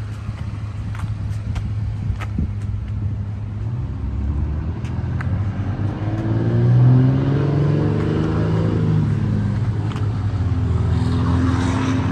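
GMC Canyon's 3.6-litre V6 idling with a steady low hum, its sound swelling for a few seconds midway.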